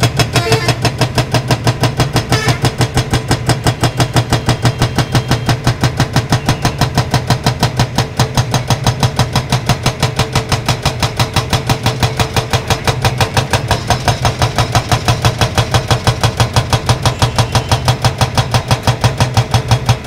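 Excavator-mounted hydraulic breaker hammering a concrete road surface. It is a steady rapid pounding of about five or six blows a second over the excavator's running engine.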